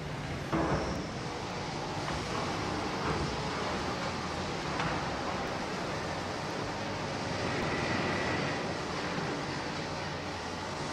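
Steady din of iron foundry machinery, with a louder metal clank about half a second in and a few lighter knocks later. A faint high whine rises out of the din near the end.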